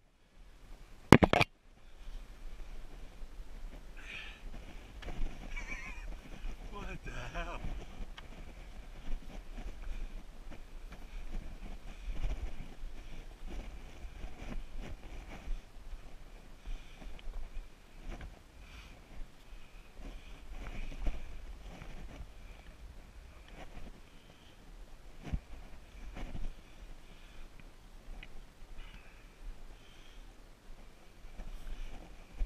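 Boots and gloved hands scuffing and knocking on bare granite as a hiker scrambles up a steep rock ledge, in irregular steps and scrapes, with one sharp knock about a second in.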